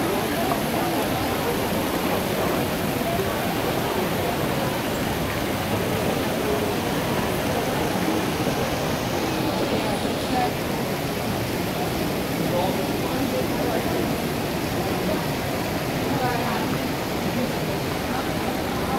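Crowd hubbub in a large, echoing shopping-mall atrium: many indistinct voices and footsteps over the steady splashing of an indoor fountain, with the water hiss fading about halfway through.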